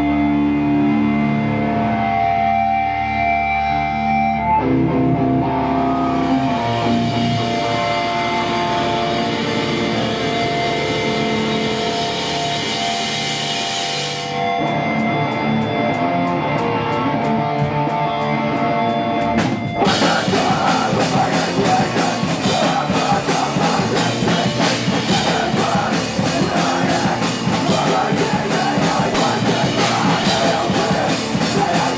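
Live heavy rock band with electric guitar, bass and drum kit playing loud. Held guitar and bass notes ring with cymbals for the first part. About 14 seconds in it drops to a tighter rhythmic part, and near 20 seconds the full band comes in harder and denser.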